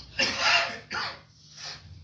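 A small child's high-pitched voice: three short calls or cries, the first the longest.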